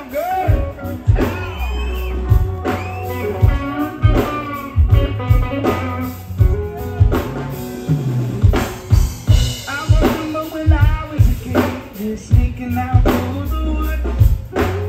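A live reggae band playing a song: drum kit, heavy bass and electric guitar, with singing over it.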